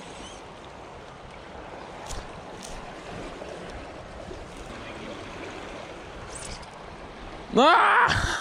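River current rushing and foaming over bankside rocks, a steady wash of water. A man's voice breaks in loudly near the end.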